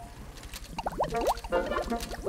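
Cartoon soundtrack music with a steady low pulse, and a cluster of quick sliding blips, rising and falling in pitch, about a second in.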